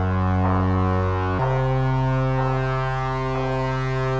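Minimal techno track in a beatless stretch: a low, held synthesizer chord with a brighter swell about once a second. The chord steps up in pitch about a second and a half in.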